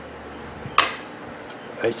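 A single sharp metallic click as the sheet-metal top cover of a microwave oven magnetron is handled against the magnetron body, just after being lifted off.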